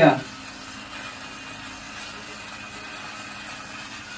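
Soviet 'Sputnik' wind-up mechanical shaver, made by the Chelyabinsk watch factory, running with a steady buzz as it is held to the beard and shaves.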